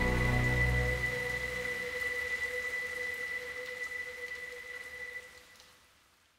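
Steady rain falling, as the song's last low chord dies away in the first couple of seconds. A faint held high note lingers over the rain, and both fade out near the end.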